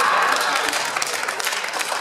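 Audience applauding, many hands clapping at once and gradually dying down.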